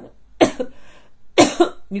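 A woman coughing twice, about a second apart.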